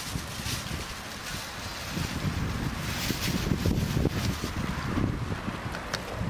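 Wind buffeting the microphone, a low rumble that grows louder about two seconds in, with occasional brief rustles.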